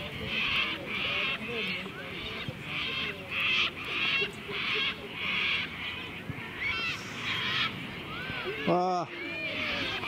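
Birds calling over and over in a harsh, rasping chatter, with a few whistled rising-and-falling notes. A single shout comes near the end.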